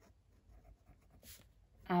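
Fineliner pen scratching faintly across lined notebook paper as words are written by hand.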